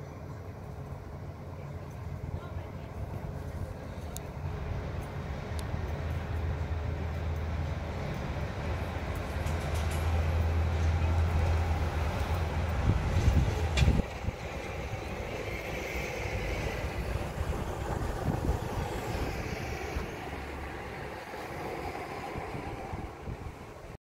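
Low engine drone of a nearby vehicle, growing louder over the first dozen seconds, then cutting off with a knock about 14 seconds in. Softer background traffic noise carries on after it.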